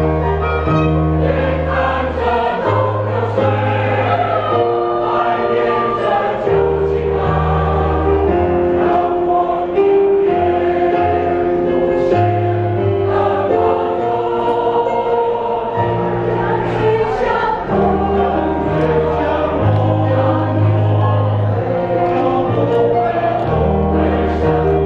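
Mixed choir of men and women singing a song in harmony, with instrumental accompaniment holding long bass notes that change every couple of seconds.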